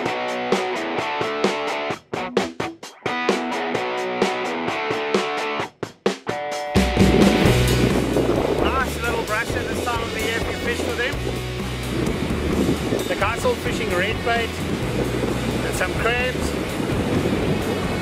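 Guitar background music, which cuts off suddenly about seven seconds in to wind buffeting the microphone over heavy surf breaking on rocks, with a few short high squeaks in it.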